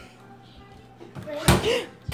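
The lid of a stainless-steel motion-sensor trash can shutting with a single loud slam about one and a half seconds in.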